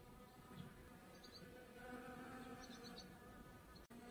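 Faint, steady buzzing of bees flying among mullein flowers, a little louder from about two seconds in.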